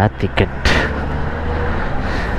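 A road vehicle's engine running with traffic noise: a short rush of noise a little over half a second in, then a steady low hum.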